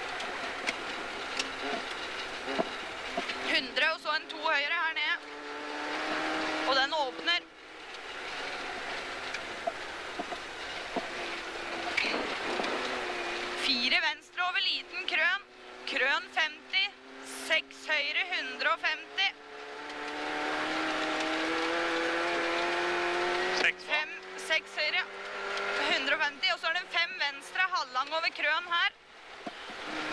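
Rally car engine heard from inside the cabin while driving hard on a snowy stage. The revs climb slowly in long pulls and drop off sharply a few times, over a steady hiss of tyre and road noise.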